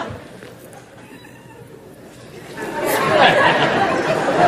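Audience murmuring and chattering in reaction. The sound falls to a lull within the first second, then swells back up from about two and a half seconds in.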